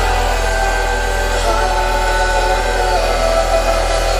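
Live electronic music over a loud PA: a deep bass note held steady under sustained synth tones, without a drum beat.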